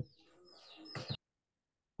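Faint bird chirps picked up through a video-call microphone, cutting off abruptly to dead silence just over a second in.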